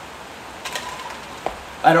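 A pause in a man's talk filled by steady background hiss, with a faint click about one and a half seconds in; his voice starts again near the end.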